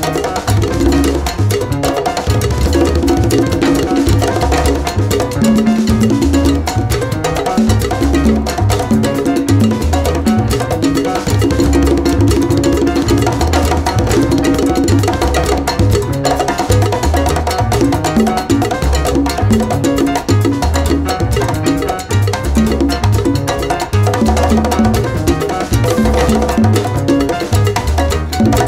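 Instrumental Latin jazz salsa recording: a repeating bass line under busy percussion, with pitched melodic lines above.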